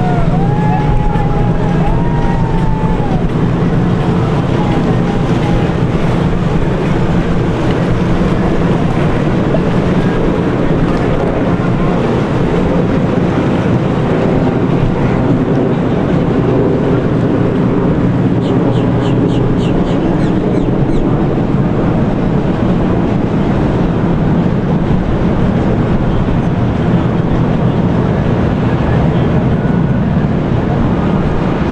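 Motorboat engine running steadily on the water, with wind on the microphone.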